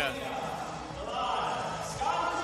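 An indistinct man's voice over the background of a large hall, with no clear music.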